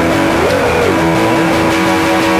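Soundtrack music: a distorted electric guitar holds a long droning note. About half a second in it bends up and falls back, then settles on a lower held note.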